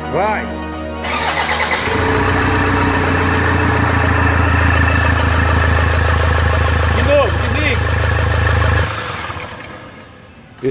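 Freshly rebuilt Toyota Hilux diesel engine started for the first time: it cranks and catches about two seconds in, runs steadily for about seven seconds, then is shut off and dies away near the end. A short musical transition sweep is heard at the very start.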